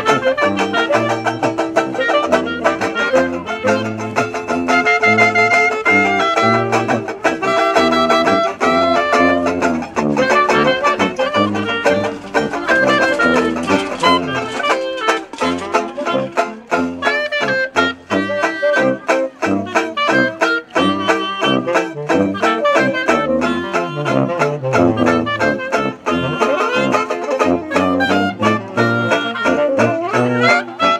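Small jazz band playing live: banjo strumming chords, saxophone and clarinet carrying the melody over a sousaphone bass line that plays separate low notes in a steady rhythm.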